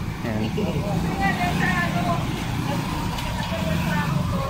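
A steady low hum from a running engine, with faint voices over it and a brief spoken word near the start.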